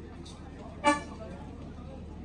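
A single short car-horn toot about a second in, over a steady low hum and faint background voices.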